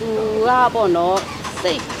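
A woman speaking Burmese, with nothing else clearly heard.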